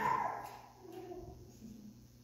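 A man's voice trailing off at the start, then a few faint, brief voiced hums.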